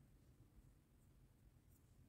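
Near silence, with faint scratchy rustling from fingers twisting the thin stripped wire strands of a charging cable.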